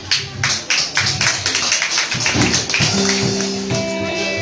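A live band starting a song: a quick, even percussive beat of about four strokes a second, joined about three seconds in by held chords.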